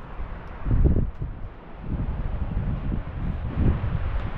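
Wind buffeting the microphone in irregular gusts, a low rumble, strongest about a second in.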